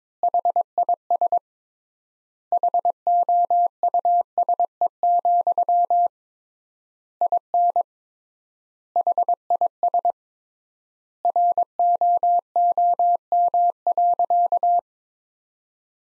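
Morse code sent as a single steady beep tone at 22 words per minute, spelling out a practice sentence in dots and dashes. Each word is a quick cluster of beeps, and the words are separated by extra-long pauses.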